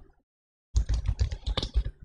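Typing on a computer keyboard: a quick, dense run of keystrokes starting under a second in, each key press a short click with a low thud.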